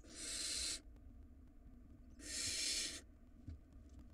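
Barn owl nestlings giving two harsh, hissing calls, each just under a second long: one right at the start and another about two seconds later.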